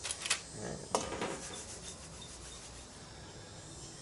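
Breading mix and fish being worked around a stainless steel mixing bowl: a few sharp clicks in the first second, then a soft, steady rubbing of the dry flour coating against the steel.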